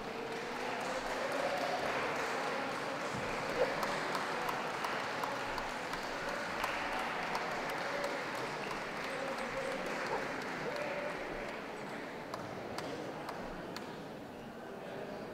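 Audience applauding in a large hall, a dense patter of clapping that builds about a second in and eases off near the end, with crowd chatter underneath.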